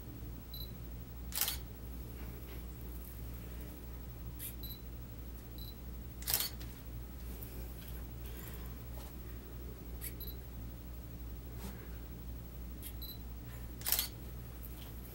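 A digital camera taking photos: short high electronic beeps and sharp shutter clicks every few seconds, over a steady low room hum.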